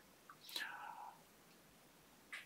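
A faint breath drawn by the man between phrases, lasting about half a second, with a small mouth click just before it; otherwise near silence.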